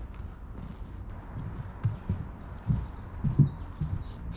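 Outdoor ambience: a low steady rumble with a couple of dull thumps past the middle, and a few short high bird chirps in the last second and a half.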